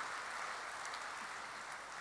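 Audience applauding in a large hall, faint and slowly dying away.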